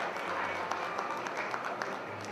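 Audience applauding in a large hall, scattered clapping with voices mixed in.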